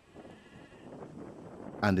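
Faint bleating of livestock over a low outdoor background, growing gradually louder.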